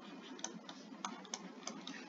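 Stylus tapping on a tablet screen while handwriting: about six faint, irregular light clicks.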